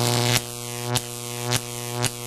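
Electric buzzing hum from an intro sound effect, one steady low pitch broken by a short click about every half second.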